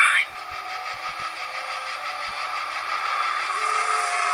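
Movie trailer soundtrack playing into a small room: a steady droning bed of sound effects that slowly grows louder.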